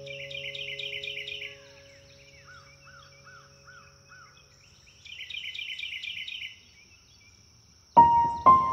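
Birds singing: a phrase of rapid repeated chirps, then five slower, lower whistled notes, then a second run of rapid chirps. A faint steady high-pitched tone lies under them.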